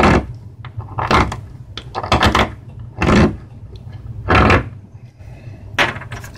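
A Scandinavian-grind knife blade carving shavings off a piece of bone: about six short scraping strokes, roughly a second apart, worked along the length of the edge to test it for chipping.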